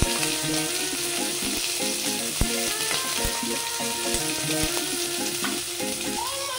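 Chopped green capsicum sizzling as it fries in oil in a kadai, a steady hiss with a few short knocks.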